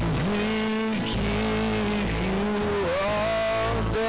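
Live worship band playing a song: guitars and a cajon under a held melody line that moves through long, sliding notes and rises near the end.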